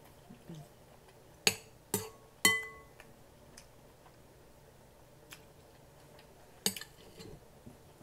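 Metal spoon clinking against a glass bowl while scooping: three sharp clinks about half a second apart starting a second and a half in, the last one ringing briefly, then another clink near the end.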